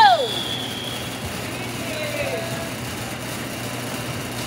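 A loud shouted voice call that falls in pitch at the very start, then a steady low hum with faint far-off voices.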